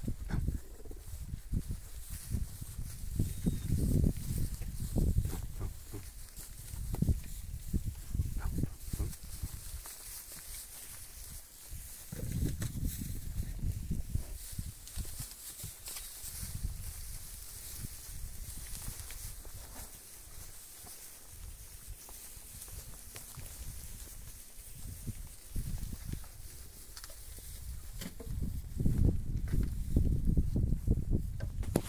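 Young heifers moving about in a straw-covered pen, their shuffling and scuffing heard as irregular low rumbles and short knocks.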